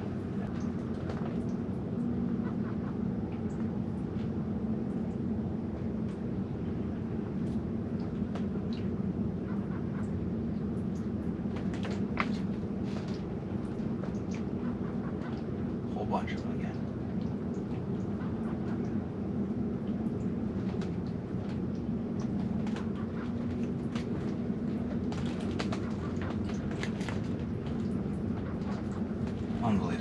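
A steady low rumble with a few faint ticks, about twelve and sixteen seconds in.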